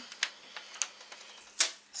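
A few light, separate clicks and taps from a plastic eyeshadow palette being handled, the strongest near the end.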